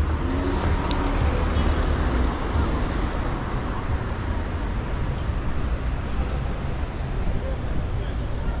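City street traffic noise, steady, with a deeper engine rumble from a passing vehicle in the first second.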